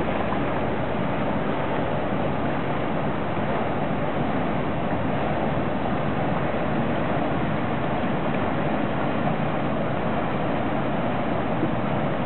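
Steady rushing of water and wind as a loaded inland container barge passes, its bow pushing up a wave.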